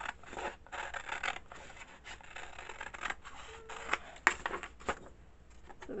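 Scissors cutting along the edge of a sheet of paper: an irregular run of snips with paper rustle, a few a second, the sharpest snip a little past four seconds in, and the cutting tailing off near the end.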